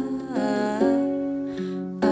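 Mellow song with plucked strings and long, sustained melody notes that slide between pitches, with no lyrics sung.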